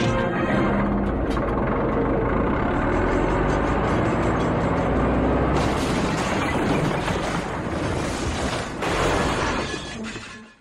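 Film soundtrack: music over the heavy engine of a bulldozer running, with a sudden crash about nine seconds in as it breaks through a door.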